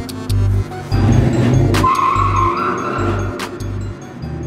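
Background music with a heavy, steady bass beat of about two beats a second. A high screeching tone, held for about a second, comes in about two seconds in over the beat.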